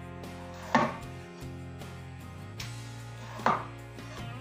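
A knife chopping on a cutting board: two sharp strikes, the first about a second in and the second near the end.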